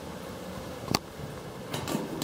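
Steady low hum inside a Kone elevator car, with one sharp click about a second in and a few softer clicks near the end as a car call button is pressed.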